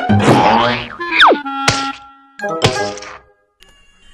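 Cartoon sound effects over children's background music: a quick falling whistle about a second in, then two sharp thunks about a second apart. It drops almost to quiet near the end.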